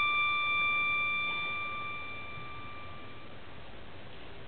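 Solo violin holding one long high note that fades away about three seconds in.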